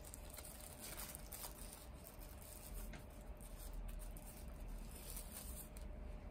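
Faint rustling and light clicks of packaging being handled while a nail drill is taken out of its box.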